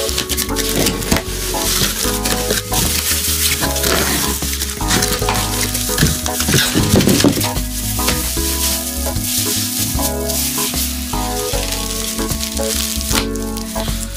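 Rustling and crinkling of cardboard and wrapping as a guitar is pulled from its shipping box and unwrapped, over background music.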